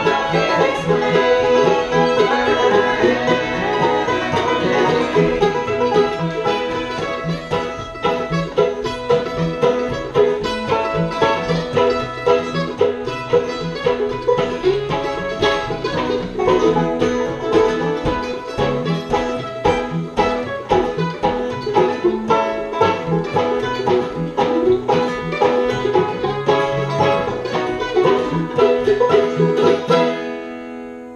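Acoustic bluegrass string band of guitar, mandolin, fiddle and banjo, with no bass, playing a fast picked tune. It ends near the end with a final chord ringing out.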